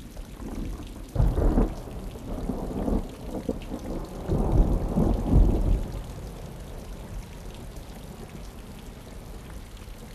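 Steady rain with rolls of thunder: a low rumble swells about a second in, and a longer, louder one builds from about four to six seconds before the rain carries on alone.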